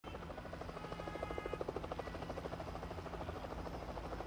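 Helicopter flying, its rotor making a rapid, steady chopping pulse.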